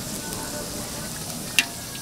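Handmade fish cakes (eomuk) frying in hot oil in a metal pan, with a steady crackling sizzle. A single sharp click comes about one and a half seconds in.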